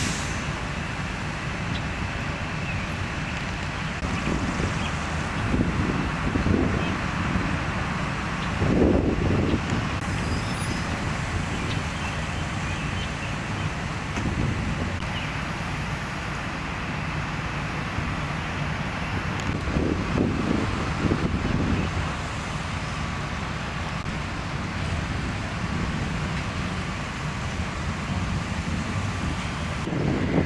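Fire trucks' engines running steadily at the scene: a low mechanical rumble with a faint steady whine above it, swelling louder a few times, around nine and twenty seconds in.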